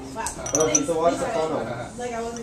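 Light clinks against a glass Pyrex beaker as a dialysis-tubing bag with a plastic clip is lowered into it, a few short rings about half a second in, under murmured speech.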